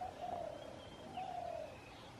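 Two drawn-out, whistle-like animal calls, each about half a second long and sliding gently down in pitch, with fainter high thin calls behind them.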